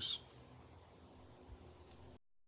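Crickets chirping faintly in short high repeated chirps over quiet outdoor background, with a soft low thump about a second and a half in.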